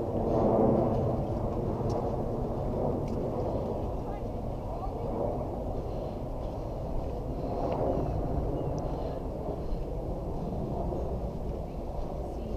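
Muffled, indistinct talking over a steady low rumble of handling and walking noise from a body-worn camera on a hike.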